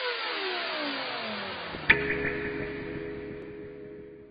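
Electronic intro sting for an animated logo: a noisy whoosh with several tones falling steadily in pitch, ending in a sharp hit about two seconds in, then a ringing chord that fades away.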